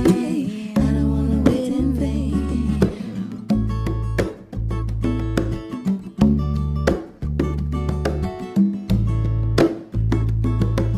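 Live band playing: strummed acoustic guitar, electric bass and hand percussion, with a woman singing over the first few seconds before the playing carries on without voice. The bass notes are held in long stretches, and hand-drum strokes fall in a regular groove in the second half.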